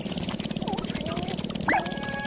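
Male sharp-tailed grouse dancing on a lek: a fast, even rattle from the dance's rapid foot-stamping and tail-feather rattling, with a few short gliding calls over it, the loudest near the end.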